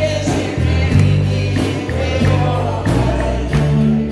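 A choir singing a gospel song over a band, with a deep bass line and a steady beat.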